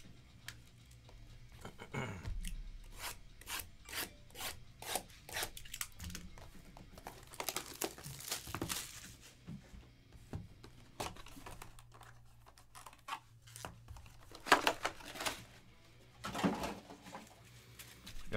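A cardboard trading-card hobby box being torn open and its packaging handled: a run of short tearing, scraping and rubbing sounds, loudest in two bursts near the end. A foam insert is being pulled out of the box.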